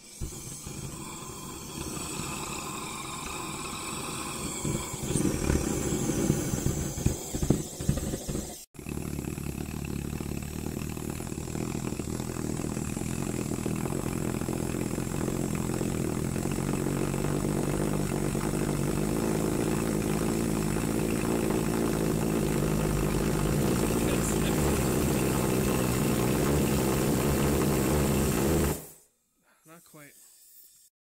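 Homemade copper-pipe pulsejet fired on propane, with compressed air from a blow gun forced into its intake. At first it sputters and pops unevenly. After a cut it runs with a steady, loud, pitched roar that stops abruptly near the end.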